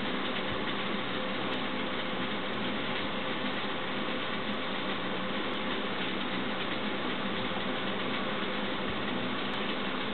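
A steady, even hum and hiss with no distinct events.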